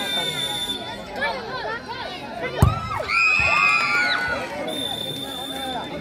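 Spectators talking and calling out, with a single sharp thud of a futsal ball being struck about two and a half seconds in, then a loud shout from the crowd.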